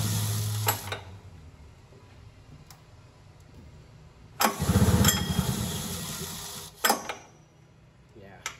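Old hovercraft two-stroke engine being cranked over twice without firing: a burst of rapid pulsing that stops about a second in, then a second cranking attempt from about four and a half seconds that fades out, followed by a click. The engine does not catch because no spark is getting through.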